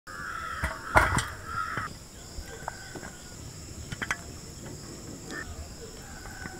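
Crickets chirring steadily, with a few sharp knocks on top, the loudest about a second in.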